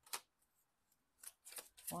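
Tarot cards being handled and shuffled: one short card snap just after the start, then a quick run of card flicks near the end.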